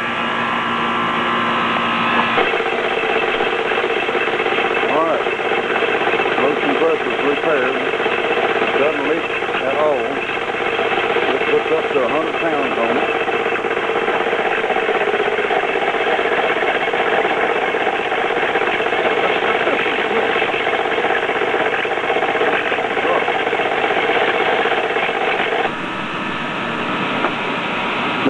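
Small electric air compressor, its cast aluminum head repaired by welding, running with a steady mechanical hum. The hum settles in about two seconds in and eases a couple of seconds before the end.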